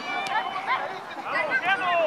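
Several voices shouting and calling out over one another, the sideline chatter of spectators and players at a youth soccer match.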